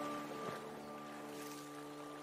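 Solo piano music in a pause between phrases: a few held notes slowly fading, over a steady rush of flowing water.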